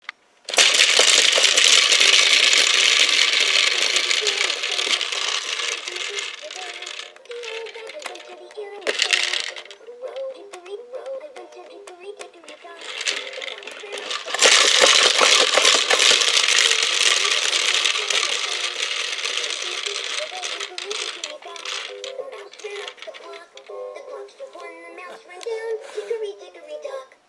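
A toy spinning top pumped by hand twice, the loose balls inside its clear dome rattling and whirring as it spins, each spin fading as the top slows.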